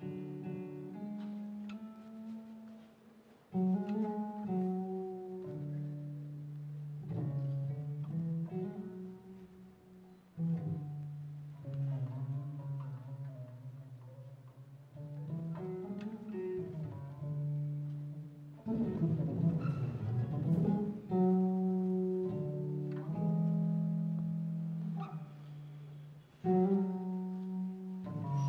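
Electric bass guitar played fingerstyle, the traditional finger-picking style: short phrases of held, plucked notes, with a couple of slides and bends in pitch between them.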